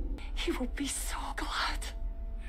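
A person whispering a few breathy words over a low steady hum.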